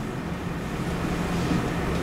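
Steady room noise: a hiss with a low hum, slowly growing louder.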